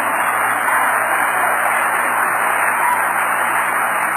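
Audience applause, a dense steady clatter that builds up, holds for several seconds and then dies away.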